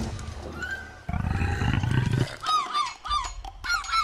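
A low rumbling roar lasting about a second starts about a second in. From about halfway through it gives way to cartoon seagulls squawking, a quick run of short harsh calls.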